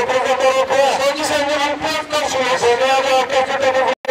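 A man speaking into a handheld microphone, his voice loud and continuous, cutting out briefly at the very end.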